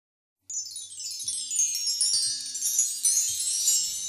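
Chimes opening a song: a shimmering, falling run of many high ringing notes that starts about half a second in, with a soft low note held underneath.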